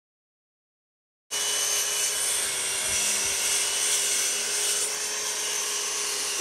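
Silence, then about a second in the sound cuts in abruptly to a compact electric circular saw running steadily with a constant whine as it cuts a vinyl floor plank.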